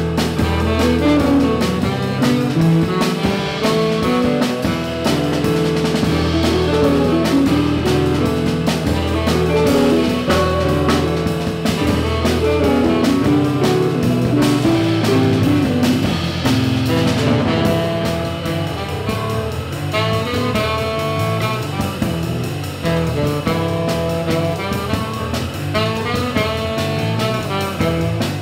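Small jazz band playing live: a saxophone carries the melody over hollow-body electric guitar, upright double bass, electric keyboard and drum kit.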